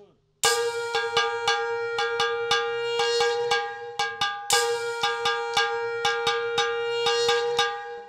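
Hand-held brass gong struck rapidly with a wooden stick, about four strokes a second, ringing with a sustained metallic tone. It comes in suddenly about half a second in, eases briefly near the middle, and picks up again with a stronger stroke.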